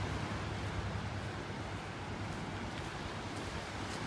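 Steady wind on the microphone over gentle surf lapping at the shore.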